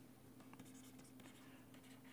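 Near silence: faint ticks of a stylus writing on a pen tablet over a low steady hum.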